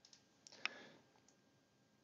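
Near silence, with a couple of faint computer mouse clicks about half a second in.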